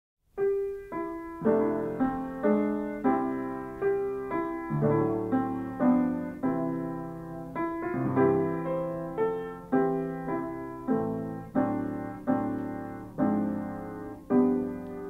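Piano playing the slow opening of a ballad: chords struck about twice a second, each ringing and fading before the next.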